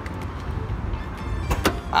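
Two sharp clicks close together about a second and a half in, typical of a car door latch, over a steady low rumble of street traffic.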